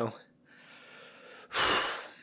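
A man breathing close to the microphone during an emotional pause: a soft breath out, then a sudden, loud, sharp intake of breath about a second and a half in.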